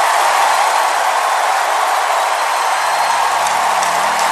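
Loud, steady rushing noise, like static or a whoosh, from a show intro's sound effect. A low droning tone creeps in near the end.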